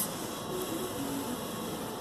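Steady hiss of room noise, with a few faint brief tones about half a second to a second in.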